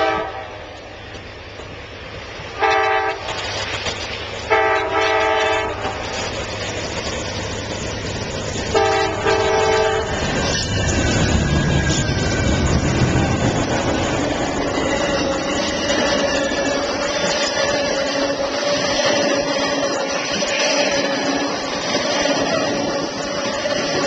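Amtrak passenger train's multi-chime locomotive horn sounding three blasts, a short one and then two longer ones, as the train approaches. From about ten seconds in, the GE Genesis diesel locomotives and bi-level Superliner cars pass close by, a heavy rumble with wheels rolling on the rail and a steady squeal running through it on the curve.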